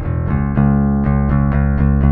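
Electric bass guitar played with a pick: a quick run of notes, then rapid, even repeated strokes on one low note.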